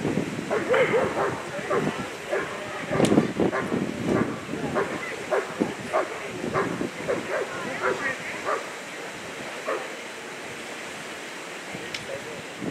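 German Shepherd Dog barking repeatedly in short barks, two or three a second, while it guards the helper. The barks thin out in the last couple of seconds.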